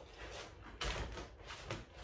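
Faint rustling and crinkling of vinyl wrap film being handled and pressed against a car body panel, with one short, louder rustle about a second in.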